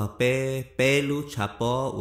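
A man's voice narrating in Hmong, in long, drawn-out, chant-like syllables.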